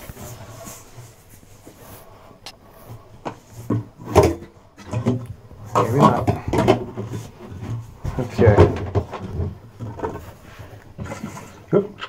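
Wet/dry shop vacuum running, its hose sucking the leftover water out of a toilet tank in uneven surges.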